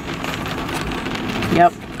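Steady rain on the roof and glass of a parked car, heard from inside the cabin, with a faint low hum underneath.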